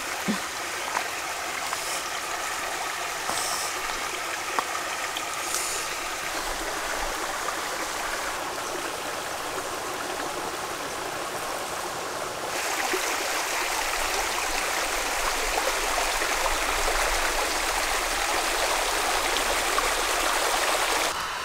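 Shallow stream running over stones: a steady rush of water that gets louder and fuller about twelve seconds in.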